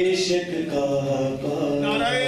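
A man's voice chanting a melodic recitation into a microphone, holding long steady notes and moving between pitches.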